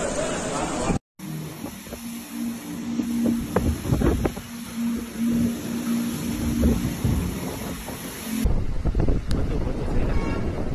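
Storm wind buffeting a phone microphone, a heavy rumbling noise, with a low droning tone that comes and goes in the middle stretch. The sound cuts out abruptly about a second in and changes suddenly again near the end, where the wind rumble grows louder.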